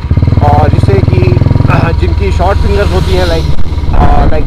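Royal Enfield Classic 350's single-cylinder engine running through an aftermarket exhaust while the bike is ridden, a steady low note whose pitch shifts about halfway through.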